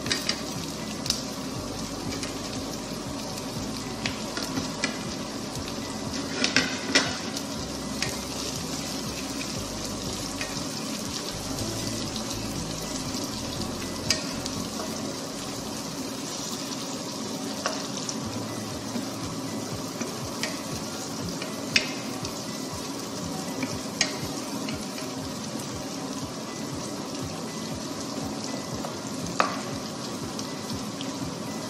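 Sliced onions and cherry tomatoes sizzling in a nonstick frying pan while a wooden spatula stirs and scrapes them, with sharp clicks of the spatula against the pan every few seconds.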